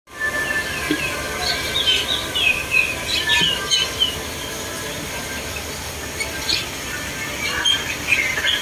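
Birds chirping in clusters of short, quick calls, busiest a couple of seconds in and again near the end, over a steady open-air background.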